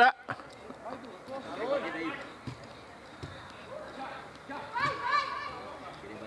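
Distant shouts from players across an open football pitch, twice, with a couple of faint thuds in between.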